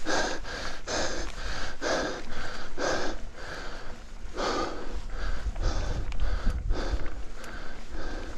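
A cyclist breathing hard and fast, about two heavy breaths a second, from the effort of pedalling uphill, with a low rumble building in the second half.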